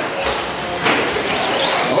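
Electric motors of Traxxas Slash RC short-course trucks racing, a high whine that rises and falls in pitch in the second half. About a second in there is a knock as a truck comes down off a jump onto the carpet.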